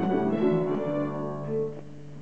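A young string ensemble of cellos and violins playing a simple tune, closing on a long held note that dies away near the end.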